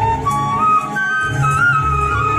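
Bamboo transverse flute playing a slow melody of held notes, stepping up to a higher note about a second in.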